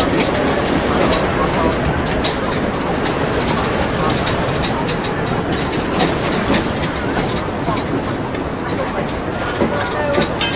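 Train running on rails: a steady rumble with a string of sharp wheel clacks, over the voices of a street crowd.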